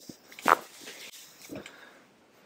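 Side-posture lumbar chiropractic adjustment: one sharp, loud crack from the lower-back joints as the thrust is given, about half a second in, followed by a few fainter short sounds.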